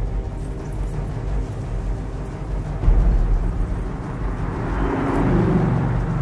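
Dark film score: a low sustained drone with a deep hit about three seconds in, then a swell that builds toward the end.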